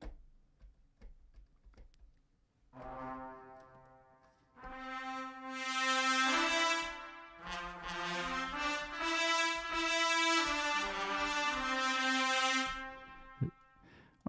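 Sampled trumpet section from Native Instruments' Brass Ensemble virtual instrument, played from a keyboard. After a quiet start comes one soft held note, then a run of sustained trumpet chords that change pitch and swell, stopping about a second before the end.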